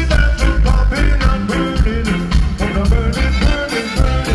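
Live reggae band playing loud through the PA: a heavy bass line and drums keeping a steady beat, with a melodic line over the top.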